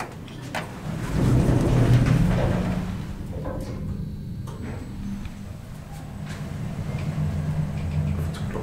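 A click as a floor button is pressed in a 2009 Schindler 5400 traction elevator. The car doors then slide shut over about two seconds, the loudest part. After that the car travels with a steady low hum.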